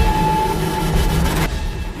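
Cinematic trailer sound design: a heavy low rumbling drone with a steady held tone, thinning out about one and a half seconds in.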